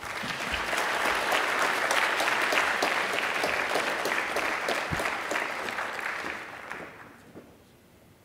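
Audience applauding, a dense patter of many hands clapping that dies away near the end.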